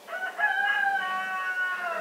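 A rooster crowing: one long crow of nearly two seconds that holds its pitch and sags slightly at the end.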